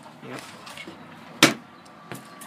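A single sharp knock about a second and a half in, the sound of packaged items or hands knocking against a cardboard shipping box.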